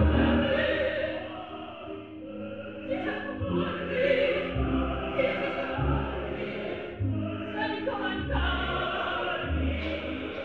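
Live opera performance: singing voices with orchestra accompaniment, low orchestral notes pulsing about once a second beneath the singing.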